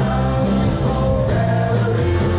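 Live rock band playing a song through a PA, with electric guitars, electric bass and a drum kit.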